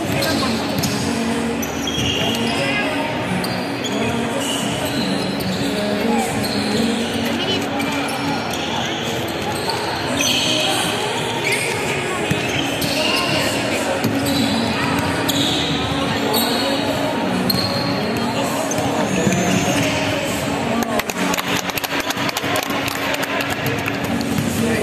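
Basketball being dribbled on a hardwood court during a game, with overlapping voices of players and spectators calling out and short high squeaks from sneakers, all in the echo of a large sports hall.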